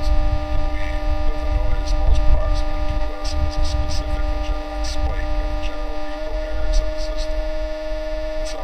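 Experimental electronic noise music: a steady droning hum built of held tones near 300 and 600 Hz and many fainter overtones, over a rumbling low end, with scattered short crackles. The low rumble thins out about two-thirds of the way through.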